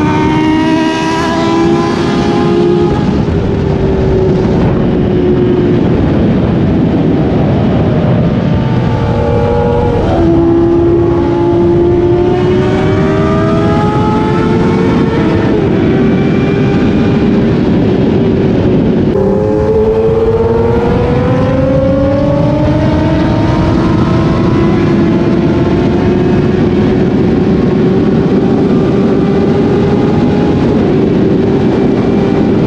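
Inline-four sport bike engine pulling hard at high speed, its pitch climbing steadily through the gears with an upshift about ten seconds in and another about nineteen seconds in. A heavy rush of wind noise runs under it.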